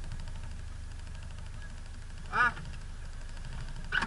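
A 4x4 off-roader's engine running steadily at low revs, heard from inside the cab as a low rumble, with a brief voice sound about two and a half seconds in.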